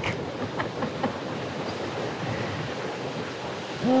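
Steady outdoor beach ambience: an even rush of surf and wind.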